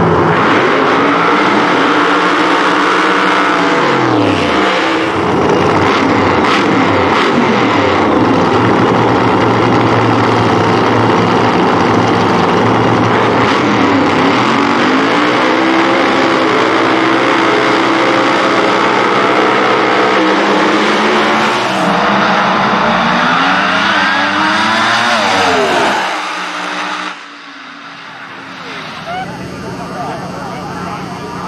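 Two Top Alcohol Funny Cars' engines running loud at the starting line and revved a few times, then a long rising rev from both as they launch and run down the track. The sound drops away sharply near the end.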